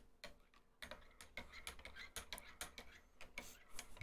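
Faint, irregular light clicks and taps of hands handling small things at a desk, starting about a second in.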